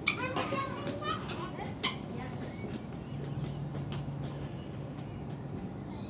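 Outdoor background with a person's voice calling out in the first two seconds, broken by a few sharp knocks. A low steady hum follows in the middle, and faint high chirps come near the end.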